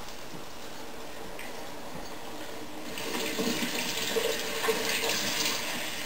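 Breaded chicken-fried steak being lowered into about half an inch of hot oil and sizzling as it starts to fry. The frying grows louder and more crackly about three seconds in.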